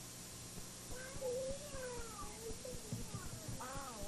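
Voices in a drawn-out, wavering exchange, with an "oh" about a second in and more voice near the end, their pitch warbling and sliding because the worn VHS tape is playing off track. A steady low hum and tape hiss run underneath.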